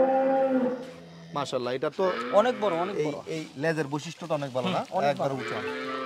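A Friesian dairy cow mooing once at the start, a steady held call of about a second. Voices talking take over from about a second and a half in.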